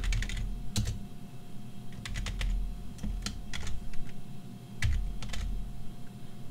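Typing on a computer keyboard: about a dozen short, sharp keystroke clicks at an irregular pace, over a faint steady hum.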